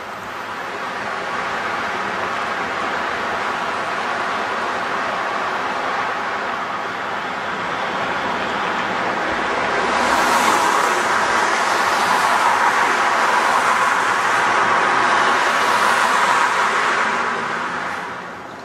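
Street traffic noise, a steady rush of tyres and engines that grows louder about ten seconds in and drops off near the end.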